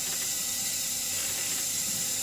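Two Tesla Energy Lights high-voltage units running, giving a steady electrical hiss with a fine rapid crackle and a thin high whine over it.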